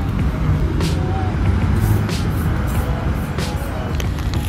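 Steady low rumble of street traffic, with a few short clicks.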